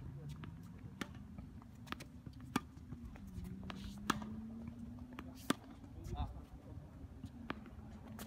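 Tennis balls struck by rackets and bouncing on a hard court: sharp, separate pops every second or so, over a faint, steady low drone.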